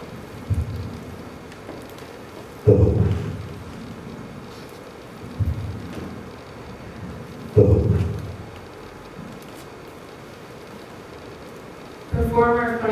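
Four low booming thuds about two and a half seconds apart, each dying away over a second or so; the second and fourth are the loudest, and faint hiss fills the gaps.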